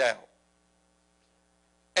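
A man's spoken word trailing off, then a pause of near silence with only a faint steady electrical hum, before his voice starts again at the very end.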